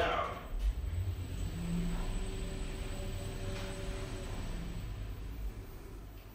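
Orona machine-room-less traction lift travelling, heard from inside the car: a steady low rumble with a faint drive hum that comes in about two seconds in.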